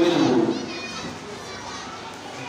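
A boy's voice through a microphone trails off about half a second in, leaving faint background chatter of children.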